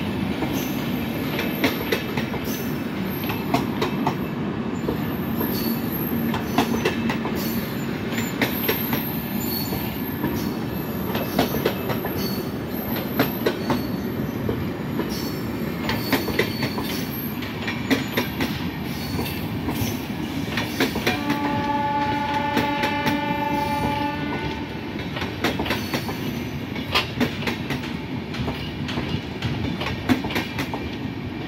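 LHB passenger coaches rolling slowly past: a steady rumble with irregular clicks as the wheels run over rail joints and points, and brief high squeals now and then. About two-thirds of the way through, a train horn sounds once, a steady tone held for about three seconds.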